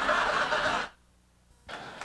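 Audience laughter that cuts off sharply about a second in, followed by a moment of near silence and then faint room tone.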